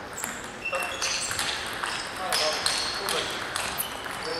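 Sports-hall din during a table tennis tournament: scattered sharp clicks of balls from other tables, many short high squeaks of shoes on the hall floor, and voices.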